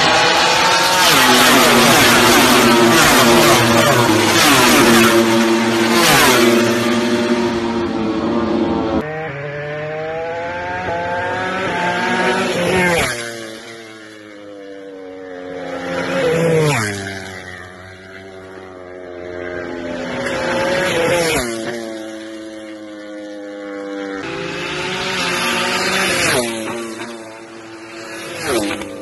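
Racing motorcycles passing at speed down a circuit straight. First comes one long, loud pass with the engine pitch stepping through the gears. Then several separate fly-bys about every four to five seconds, each getting louder and dropping in pitch as it goes by.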